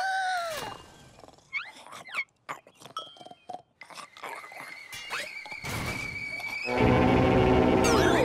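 Cartoon soundtrack: light music and small effects, then a thin held high tone. Near the end comes a sudden loud, low blast with many stacked tones: a cartoon engine's new, very loud noise, which jolts a sleeping engine awake.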